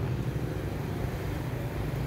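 A steady low engine hum with even low tones, as of an engine idling close by, over faint background noise.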